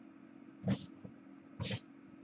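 Kittens giving two short mews, a little under a second apart.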